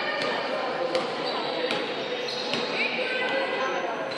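Indistinct voices echoing in a large hall, with several sharp knocks at irregular intervals.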